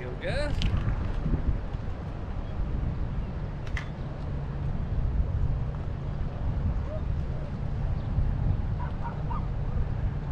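Steady low outdoor rumble of wind on the microphone, running without a break. A short pitched call curves up and down just after the start, and a single sharp click comes about four seconds in.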